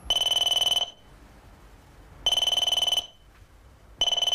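A telephone ringing: two rings of under a second each, about two seconds apart, with a third starting right at the end.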